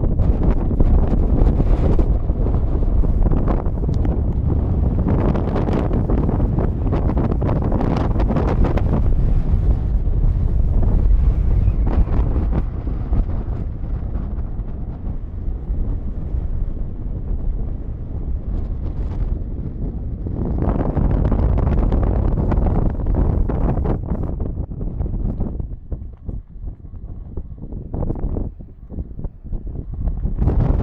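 Wind buffeting the camera microphone: a loud, gusty low rumble that eases off for a few seconds near the end, then picks up again.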